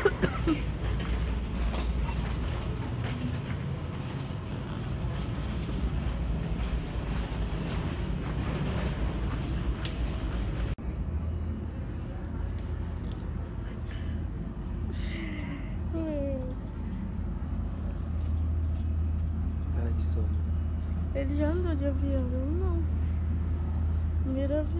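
Steady background noise of an airport boarding area with aircraft nearby, a rushing hiss over a low rumble. About eleven seconds in it cuts abruptly to a lower, steadier hum with faint voices.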